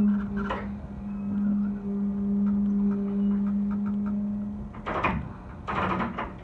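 Electric train heard from inside the driver's cab, moving slowly: a steady low hum that fades out about five seconds in, then two short rattling clunks close together near the end.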